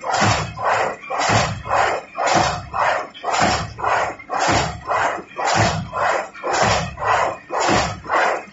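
A high-speed paper straw making machine running at a steady working speed. It makes a regular, rhythmic noisy beat about twice a second that holds even throughout.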